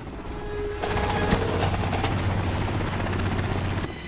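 A helicopter's steady low rotor and engine drone, coming in about a second in after a fading rumble, with a few sharp cracks over it.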